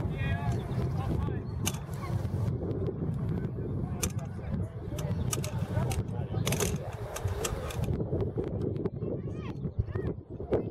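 Distant shouting voices of players and spectators across an open soccer field, with one high call in the first second. A steady low rumble of wind runs on the microphone throughout, broken by a few sharp clicks.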